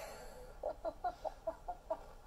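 Faint, stifled giggling from a woman: a quick run of about seven short laugh pulses, roughly five a second.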